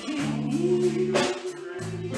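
A live band with a female singer holding a long sung note over keyboard, electric bass guitar and a drum kit, with drum and cymbal hits.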